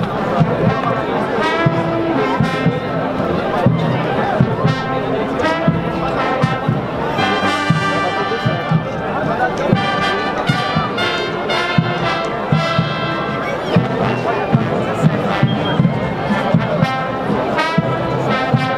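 Brass band music with a steady beat, over the murmur of a crowd talking.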